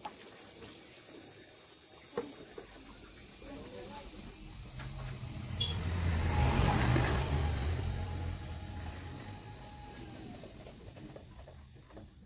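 A motor vehicle's engine goes by: a low engine rumble with road noise grows louder to a peak about halfway through, then fades away.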